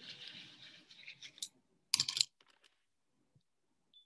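Watercolour painting materials being handled on a table: a soft scratchy rustle, then a short clatter of clicks about two seconds in, as brush, palette and water jar are worked with.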